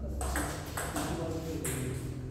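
Table tennis rally: a celluloid ball struck back and forth, several sharp clicks off the rackets and table, with voices murmuring underneath.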